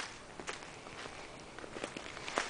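Footsteps on dry leaf litter: a few separate steps, the clearest near the start and about half a second in.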